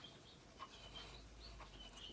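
Near silence: room tone, with a few faint, short, high-pitched chirps scattered through.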